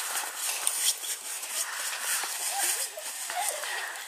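Faint children's voices, twice in the second half, over a steady rustling, crunching noise.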